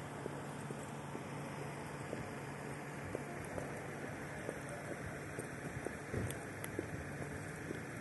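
Steady outdoor street background noise: a low traffic hum with faint scattered clicks and a slight swell about six seconds in.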